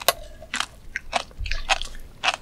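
Close-miked chewing of a mouthful of flying fish roe (tobiko): a quick, irregular run of sharp crunchy pops as the tiny eggs burst, about six or seven in two seconds.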